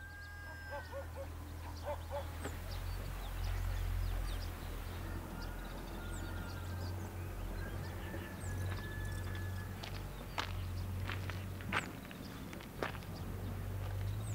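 Quiet outdoor background: a steady low hum with faint high chirps scattered through it. A few sharp clicks or knocks come in the last few seconds.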